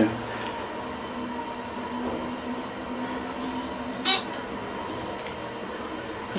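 Cab of a 1990s Dover Impulse hydraulic elevator travelling down one floor: a steady hum of the ride with faint tones. A short sharp click or ding comes about four seconds in.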